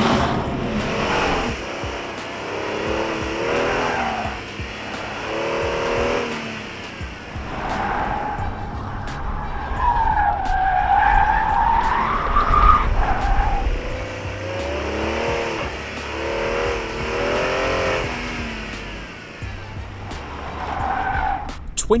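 Kia Stinger 330Si's 3.3-litre twin-turbocharged V6 revving up and easing off again and again as the car is driven hard through a cone slalom, with its tyres squealing in a long wavering squeal through the middle.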